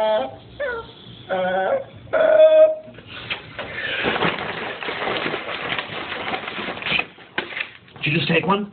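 A person's voice making three short pitched sounds in the first few seconds, followed by about four seconds of dense crackling noise made of many small clicks.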